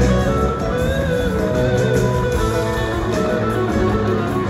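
Live band playing an instrumental passage led by guitar, with a wavering melody line over bass, heard from within the crowd.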